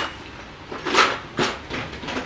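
Metal leather stamps being handled and put into a plastic compartment case: a few short rattles and knocks, the loudest about a second in.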